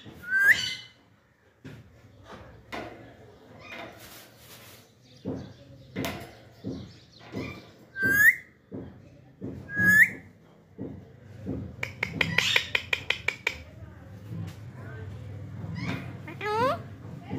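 Alexandrine parakeets calling while being hand-fed from a syringe: short rising whistled calls, two clear ones in the middle, then a quick run of about a dozen clipped notes a little later, over light handling clicks.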